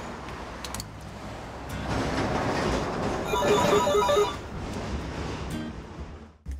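A telephone ringing: one burst of rapid, pulsing electronic ring lasting about a second, a little past the middle, over steady background noise.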